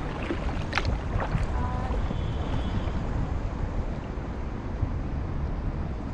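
Kayak gliding over calm river water, with steady low wind rumble on the camera microphone and water lapping at the hull. A few light splashes come in the first second and a half, then it settles to the steady rumble.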